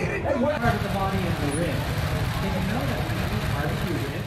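Motorcycle engine idling with a steady low pulse, with people's voices over it.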